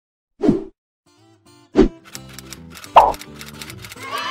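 Three short, loud pop-like sound effects about a second apart, each a quick fall in pitch, with the last one higher. They sit over light background music that takes up a fast ticking beat after the second pop.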